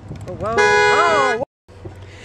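A car horn sounding once, very loud and close, held for about a second, then cut off suddenly.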